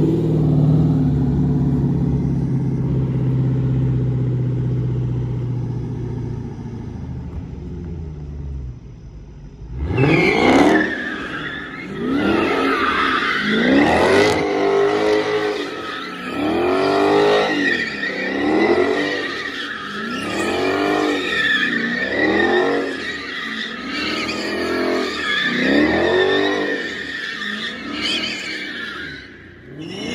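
Dodge Charger Scat Pack's 392 Hemi V8 runs at a steady low note for about nine seconds, then revs hard about ten seconds in. Through the donuts its pitch rises and falls every couple of seconds under a continuous tire squeal, which stops just before the end.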